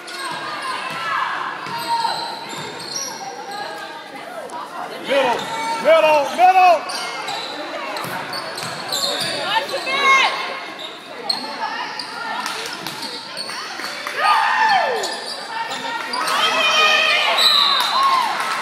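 Basketball game in an echoing gym: a ball bouncing on the hardwood floor, with players' and spectators' voices calling out.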